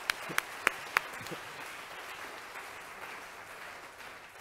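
An audience applauding, with a few louder, sharper single claps in the first second; the applause then dies away gradually.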